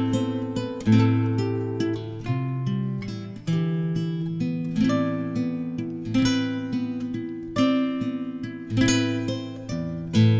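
Instrumental opening of a folk-rock song: acoustic guitar strumming chords, a strong strum about every second and a quarter, with notes ringing on between them.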